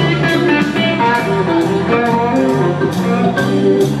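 Red solid-body electric guitar played live through an amplifier: a melodic, blues-tinged lead line of single notes, over a steady beat.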